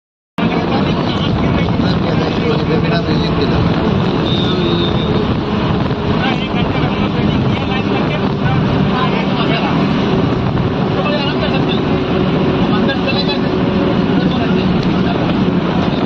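Steady engine drone and road noise heard from inside a moving bus, with faint voices in the background.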